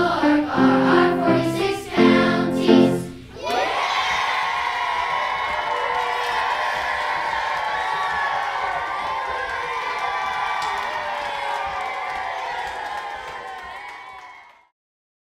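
Children's choir singing with piano, ending on a final held chord about three seconds in; then the children cheer and shout together, a steady high-pitched din that fades away near the end.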